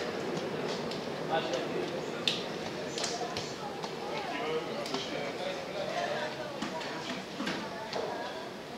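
Indistinct voices talking and calling out, none clear enough to make out, over a steady background hubbub, with a few sharp knocks or claps.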